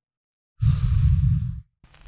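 A man's loud, breathy sigh into a close microphone, lasting about a second.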